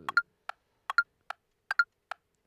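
Metronome click track ticking at an even pace of about two and a half clicks a second. Every other tick is doubled by a brighter second click just behind it: two click tracks not yet lined up.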